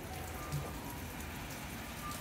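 Steady patter of rain falling on the canopy roof over the locomotive, an even hiss throughout, with a soft low bump about half a second in.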